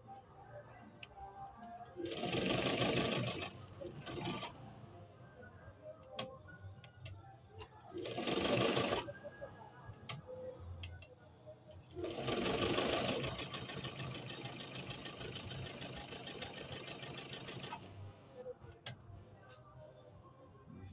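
Triumph Deluxe Precision all-metal electric sewing machine stitching through denim in three runs: a short burst about two seconds in, another about eight seconds in, and a longer steady run of rapid stitching from about twelve seconds that stops near the end. Between the runs there is quieter handling of the fabric.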